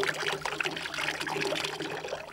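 Water dribbling out of a crushed aluminium can held upside down over a bowl, a steady trickle with small splashes. It is the water that the vacuum drew into the can as it collapsed.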